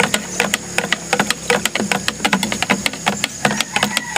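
Knapsack sprayer's small pump running, a rapid uneven clicking over a low hum, as the chemical in the tank is being mixed.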